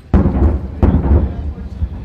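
Two heavy booms of heavy-weapon fire, the first just after the start and the second under a second later, each trailing off in a rumble.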